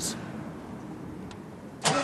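Quiet outdoor background, then near the end the shuttle bus's diesel engine, converted to run on vegetable oil, is started and catches suddenly.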